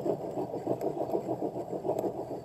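A steady low hum with a fast, even pulse, like a small motor running.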